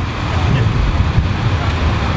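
Road traffic passing close by: a steady low rumble of vehicle engines and tyres.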